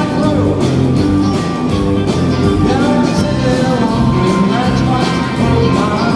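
Live rock band playing: a male lead vocal over electric guitars and drums, with a steady cymbal beat.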